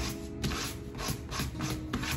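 Fine-grit sanding block rubbed back and forth over a sheet of clear stamps, a run of short scratchy strokes about three a second, roughing up the stamp faces so ink will stick.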